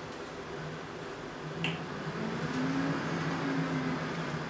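A single sharp click about one and a half seconds in as a camera with lens and flash is handled, with a low steady hum coming in just after.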